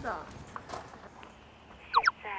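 A few faint taps in a quiet room. Near the end comes a brief, sharp sweep that falls and then rises in pitch, the loudest sound here.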